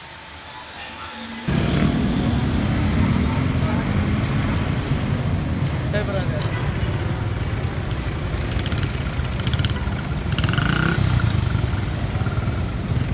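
Night street sound: traffic and motorbikes running by along with people's voices, cutting in loudly about a second and a half in after a quieter stretch.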